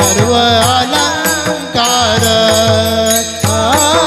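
Group of women singing a Marathi devotional bhajan together, keeping time with a steady beat of small brass hand cymbals (taal) clashed in pairs.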